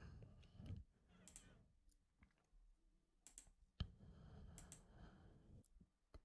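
Near silence with a few faint computer mouse clicks, the sharpest about four seconds in.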